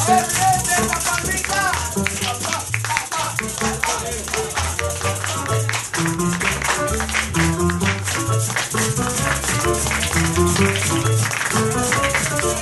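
Live Latin band music: maracas shaking in a fast, steady rhythm over plucked strings and a moving bass line.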